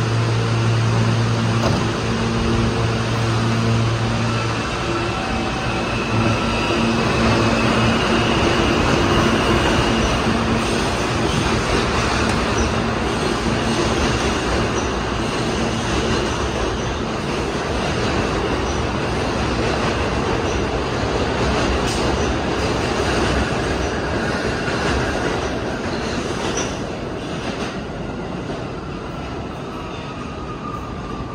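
R160 subway train pulling out of the station. It starts with a steady electrical hum while standing, then a faint rising motor whine, rumbling wheels and some wheel squeal as it picks up speed. The noise eases near the end as the train heads into the tunnel.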